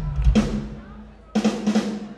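Live drum kit played in short bursts between songs: kick drum thumps at the start, then two loud cymbal-and-snare hits about a second apart, with a low note ringing beneath them.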